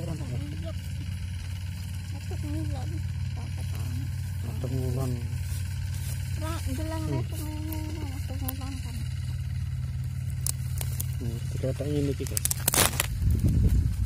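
Plastic sticky insect-trap sheet being handled, with a short, loud rustle near the end as the paired sheets are worked apart. Under it runs a steady low rumble, with a quiet murmuring voice now and then.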